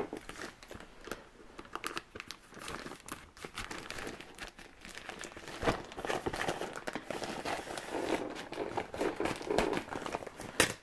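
Plastic mailing envelope crinkling and crackling as it is handled and opened by hand, in irregular rustles throughout.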